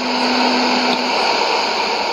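Shortwave AM static and hiss from a Sony ICF-2001D receiver tuned to 6055 kHz just after the programme has signed off, with a low steady tone that stops about a second in.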